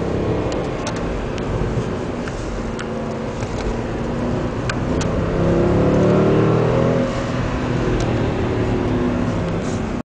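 Mercedes-Benz CLS 63 AMG V8 heard from inside the cabin while driving. The engine note climbs under acceleration about halfway through, drops briefly near three-quarters in, then pulls steadily, with a few faint clicks over it.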